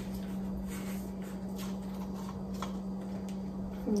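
Faint rustles and a few soft clicks of a lime being squeezed by hand into a plastic cup, over a steady low hum.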